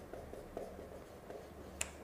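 Faint strokes of a marker writing on a whiteboard, with a sharp click near the end, over a low steady room hum.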